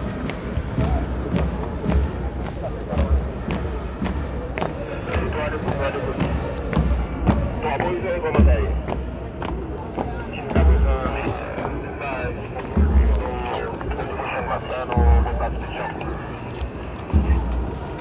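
A column of soldiers marching in step on pavement: many boots striking the ground in short sharp knocks, with a deep thud coming about every two seconds. Voices are heard in the background.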